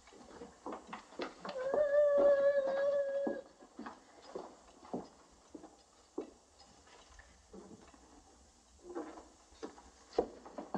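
Footsteps and light knocks on a wooden plank floor. About one and a half seconds in, a whining tone is held at one pitch for about two seconds.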